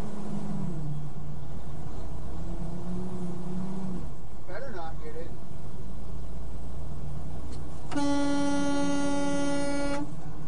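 Steady engine and road drone inside a truck cab, then the truck's horn sounds in one long, steady tone for about two seconds near the end.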